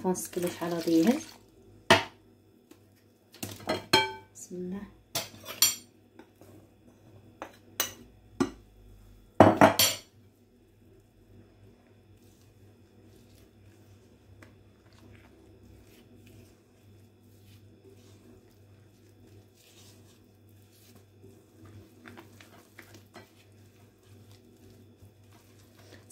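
Kitchen utensils and a cup knocking and clinking against a glass mixing bowl: a scattered series of sharp knocks in the first ten seconds, the loudest just before the ten-second mark, then mostly quiet with a few faint clicks.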